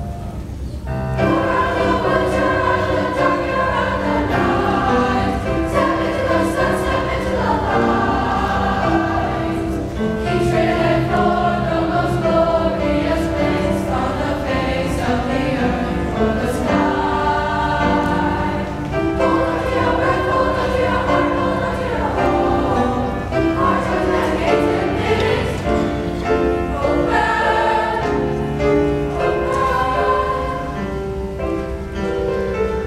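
A middle-school concert choir of mixed boys' and girls' voices singing together in parts. The voices come in about a second in, after a brief quieter musical lead-in.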